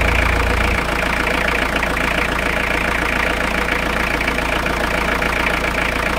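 Citroën C25-based motorhome's engine idling steadily, heard close up in the open engine bay. Its deep low rumble drops a step about a second in.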